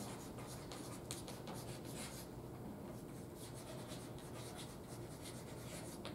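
Chalk writing on a blackboard: a faint run of quick scratches and taps as the strokes of the letters are made.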